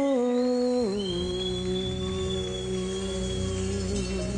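A female singer holding one long sung note, which steps down in pitch just under a second in and is then held steady, over a sustained chord from the acoustic band.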